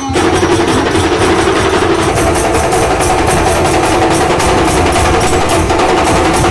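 Shigmo Romtamel troupe's drums and cymbals beating a fast, steady rhythm, loud and close, with a sustained tone running under the beat.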